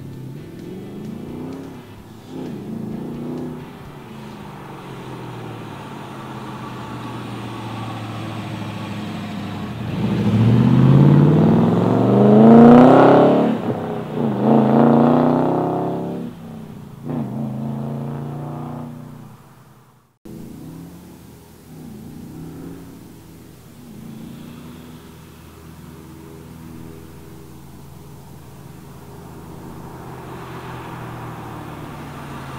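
LS1 V8 of a 1972 Oldsmobile Cutlass resto-mod, breathing through headers, dual pipes and turbo-style mufflers, driving past. Its exhaust note builds, then rises steeply in pitch under hard acceleration about ten seconds in and eases off near sixteen seconds, with a shorter rev just after. After a sudden break about two-thirds of the way through, it runs steadier and quieter.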